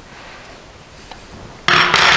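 Quiet handling with a small tick about a second in, then near the end a loud scraping rustle as the airbox base is picked up and turned over in the hands.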